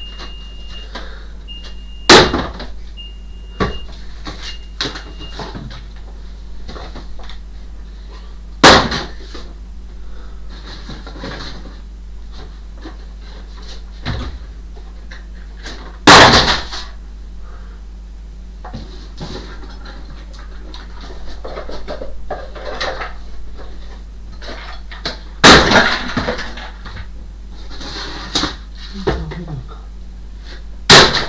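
Rummaging and rustling of boxes and papers while items are pulled off the top of a wooden wardrobe and tossed down, with four sharp knocks or clatters, each followed by a brief rattle. A faint short high beep repeats about once a second during the first five seconds.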